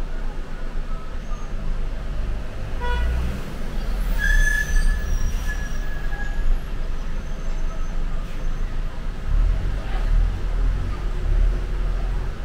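Low rumble of a city bus in stop-and-go traffic, heard from inside the bus near the front. About three seconds in a brief horn toot sounds, and a higher, drawn-out tone follows for about two seconds.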